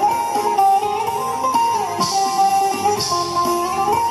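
Bouzouki playing a plucked instrumental melody in a Greek popular song, over live band accompaniment, with the vocal paused.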